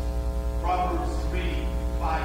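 Loud, steady electrical mains hum through the sound system, with a fast regular pulsing buzz. A faint voice comes through it partway through.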